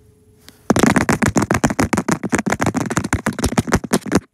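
A faint steady tone, then a sudden loud run of rapid pulses, about ten a second, starting just under a second in.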